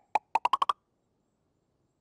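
Cartoon sound effect: a quick run of about seven short, pitched blips rising in pitch, all within the first second.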